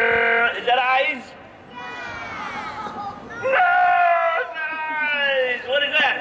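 Voices calling out in drawn-out, sing-song tones that slide up and down, with a held note at the start and another long one a little past the middle.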